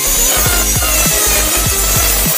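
Angle grinder with a cut-off disc grinding through the steel axle dropout of a motorcycle swingarm, a steady harsh cutting hiss, widening the slot for a hub motor's axle. Background music with a fast, steady bass beat plays under it throughout.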